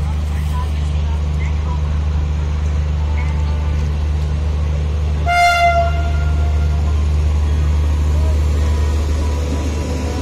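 An Indian Railways electric locomotive horn sounds once, a short blast of about a second a little past halfway. A steady low hum of the electric locomotives standing and moving nearby runs underneath.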